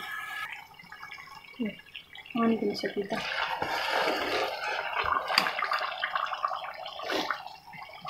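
A spoon stirring thick, ghee-rich bread halwa in a steel pot: a continuous wet squelching with small scrapes and clicks against the metal, starting about three seconds in.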